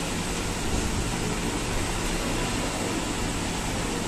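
Steady mechanical hiss with a low hum underneath, unchanging throughout.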